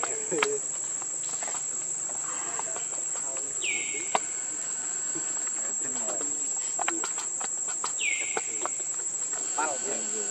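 Steady high-pitched drone of insects chirring. Twice, at about four and eight seconds in, a short call slides down in pitch and levels off. A few light clicks come between.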